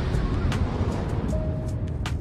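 Low rumbling tail of an explosion sound effect, slowly fading, with a few faint clicks.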